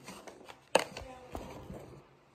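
Handling noise from a phone held in the hand: knocks and rubbing as it is moved and fingers brush over it. The loudest knock is a little under a second in, with a smaller one about a second later.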